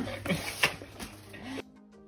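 Laughter and brief voices for the first second and a half, then a sudden cut to quiet background music with held tones.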